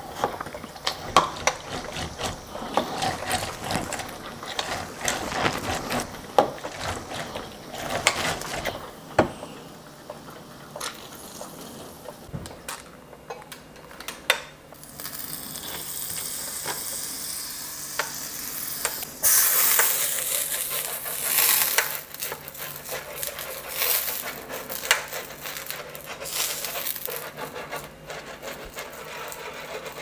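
An orange half twisted and pressed on a plastic hand citrus juicer for the first several seconds, with squishing, rubbing and clicking. Later a stretch of hissing with scattered knocks, loudest about two-thirds of the way through, while the plates of a waffle iron are brushed.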